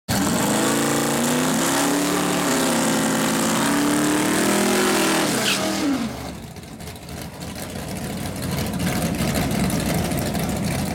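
A Ford Fairlane drag car's engine held at high revs on the starting line, its pitch wavering. About five and a half seconds in, the pitch rises sharply at the launch, and the sound fades as the car pulls away. A lower, steadier engine sound builds again near the end.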